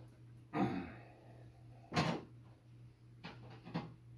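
A plastic Dyson tower fan being handled and stood upright on the floor: one sharp knock about halfway through, then two lighter knocks near the end.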